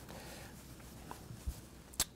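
Quiet room tone with a few faint ticks from a red wine glass being swirled on a cloth-covered table and lifted.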